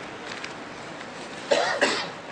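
A man coughs twice in quick succession near the end, two short loud clearings of the throat.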